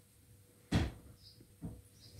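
A single sharp knock a little under a second in, then a fainter knock about a second later.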